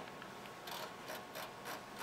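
A few faint, irregular clicks from a computer mouse's scroll wheel as it is turned to scroll through code.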